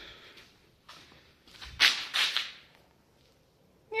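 Handling noise: a short swishing rustle about two seconds in as the hand-held phone is moved, with a fainter one about a second earlier and quiet between.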